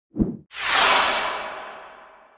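Intro logo sound effect: a short low thump, then a long whoosh that swells quickly and fades away over about two seconds.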